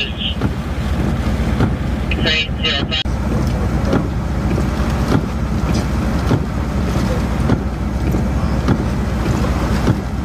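Strong storm wind and heavy rain, with a steady low rumble of wind buffeting the microphone.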